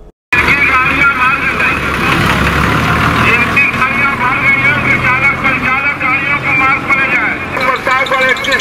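Uttar Pradesh state transport buses idling in a bus depot, a low steady engine rumble under the overlapping chatter of many people. It starts suddenly after a brief gap.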